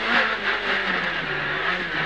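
Renault Clio S1600 rally car's engine heard from inside the cabin, its revs falling through the middle as the car slows, then picking up slightly near the end.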